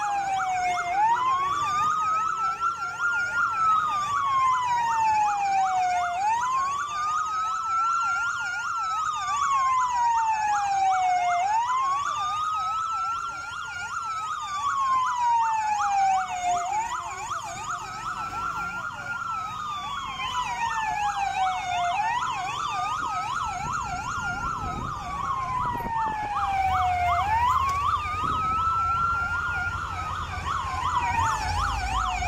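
Two emergency-vehicle sirens sounding together: a slow wail rising and falling about every five seconds, with a fast yelp over it.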